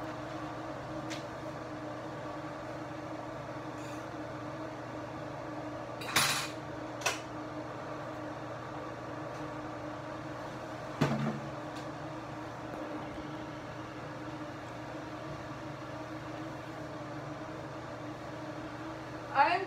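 Pots and utensils handled at a kitchen stove while checking pasta: a short clatter about six seconds in, a click a second later, and a knock with a brief ringing tone about eleven seconds in. A steady low hum runs underneath.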